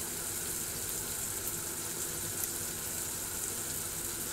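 Onion-tomato masala frying in oil in a kadhai: a steady, even sizzle.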